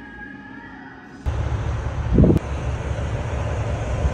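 Faint music for about the first second, then a sudden switch to loud, steady outdoor noise of heavy trucks moving through a parking lot, with one brief louder sound about a second after the switch.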